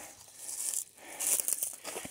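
Footsteps through dry leaves and low plants on the forest floor: two stretches of rustling, the second one longer.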